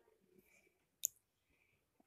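A single short, sharp click about a second in, against near silence.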